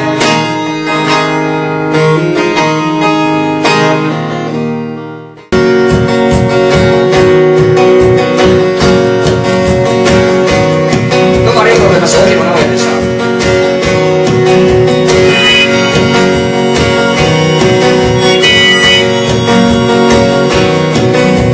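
Live acoustic guitar and harmonica music. Sustained notes fade and then cut off abruptly about five seconds in. Rhythmic strummed acoustic guitar with harmonica follows.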